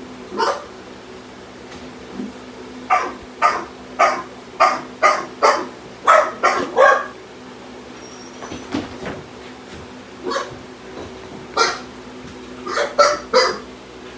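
A dog barking in short calls, first a quick run of about eight, then a few more spaced out.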